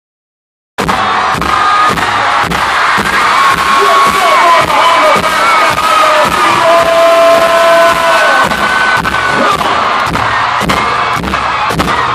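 Loud live concert music with a steady drum beat of about two beats a second, under a cheering, screaming arena crowd. The sound cuts in abruptly under a second in.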